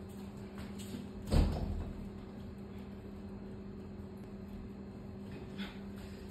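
A single dull thump about a second and a half in, with a couple of fainter knocks later, over a faint steady hum.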